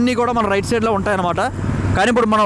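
A person talking through most of the clip over the steady hum of a motorbike being ridden. The voice pauses briefly near the end, leaving engine hum and wind rush.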